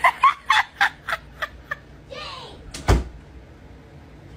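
A single loud thump a little before three seconds in: a wooden door swinging into a man's head. It comes after a run of short, fading bursts of laughter and a brief voice.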